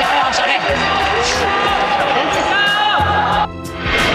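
A group of people cheering and shouting encouragement ('jiayou') over upbeat background music. The sound drops briefly near the end.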